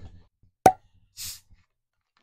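A stopper pulled from a liquor bottle with a single sharp pop, then a short fizzing hiss about half a second later as gas escapes from a soda bottle whose screw cap is being twisted open.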